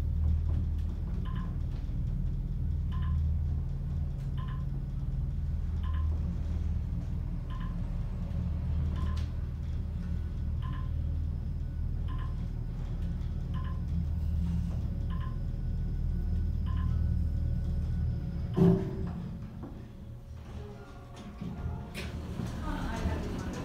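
Otis traction elevator car travelling upward with a steady low hum, and a short beep about every second and a half as each floor goes by. The hum stops near the end and a single loud thump follows as the car comes to a stop.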